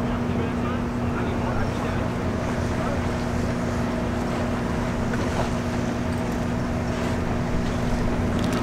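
Steady hum of idling machinery, with a constant low tone that holds level throughout, over a general noisy rumble.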